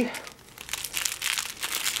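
Foil and clear plastic wrapping on a laptop battery crinkling as it is unwrapped by hand: light, irregular crackles.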